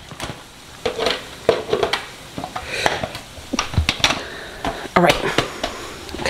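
Plastic lid and pitcher of a Ninja blender clicking and knocking as they are fitted and locked onto the base, in a series of irregular clicks; the blender motor is not running.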